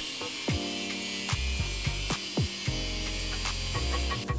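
Angle grinder with a cut-off disc cutting through sheet aluminium along a straightedge, a steady high grinding hiss, mixed under background music with deep bass notes.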